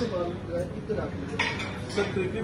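Restaurant dining-room din: background voices with plates and cutlery clinking, and a sharper clink about one and a half seconds in.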